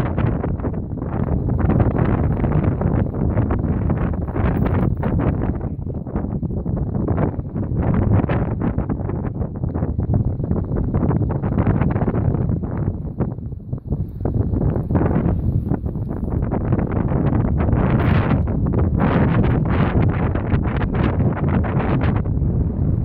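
Wind buffeting the phone's microphone: a loud, steady, gusty rumble that dips briefly a little past halfway.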